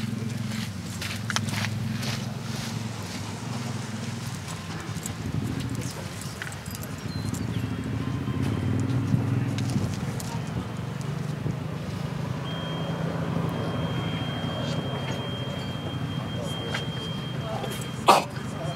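Outdoor ambience with a steady low engine-like hum and faint murmured voices. A thin, steady high-pitched tone comes in about two-thirds of the way through.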